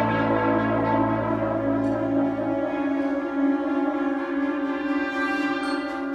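High school concert wind band holding sustained chords, brass prominent. The lowest bass notes drop out a little under halfway through, leaving the middle and upper voices sounding.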